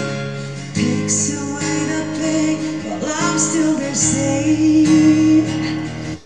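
Live acoustic rock performance: a male tenor voice singing over a strummed acoustic guitar.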